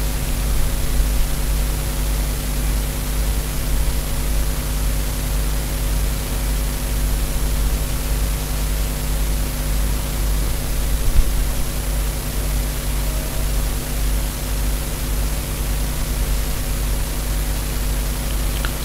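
Steady hiss with a low hum underneath and a faint high whine, unchanging throughout: the background noise of the recording.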